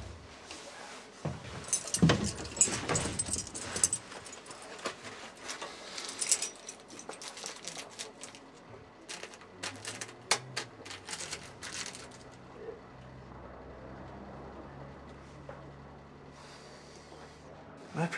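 Keys clinking and a small plastic bag crinkling as they are handled, a run of quick clicks and rustles over the first twelve seconds or so. A low steady hum comes in over the second half.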